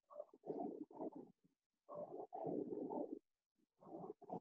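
Faint, muffled rumbling noise from a participant's unmuted video-call microphone, cut in and out in short irregular chunks by the call's noise suppression, as exercise noise leaks through during a home cardio workout.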